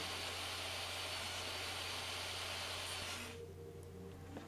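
DeWalt jobsite table saw running with no wood in the blade, a steady even whir low in the mix, which stops abruptly about three seconds in.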